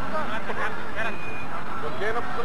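Voices of people talking and calling out, with no words clear, over a steady low rumble of outdoor background noise.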